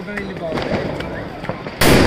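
A firecracker goes off with a single loud bang near the end, its echo trailing on. Before it come voices and a few faint sharp cracks.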